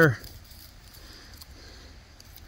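A man's voice finishes a word at the very start, then a faint, steady outdoor background hiss with a few light ticks.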